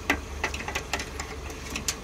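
Scattered light clicks and taps as a speaker wiring harness and its plastic connectors are handled and tucked behind a plastic speaker adapter plate in a car door, over a steady low hum.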